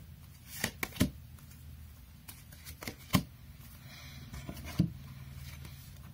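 Tarot cards being handled and laid on a table: scattered soft taps and flicks, the sharpest about three seconds in and again near five seconds, over a faint low hum.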